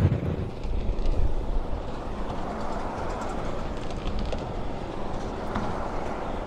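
Steady rumble of road traffic crossing the Forth Road Bridge, heard from the walkway beside the carriageway, with no single vehicle standing out.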